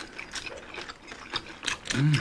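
Irregular crisp clicks and crackles of crispy bagnet, deep-fried pork belly, being eaten with the hands close to the microphone.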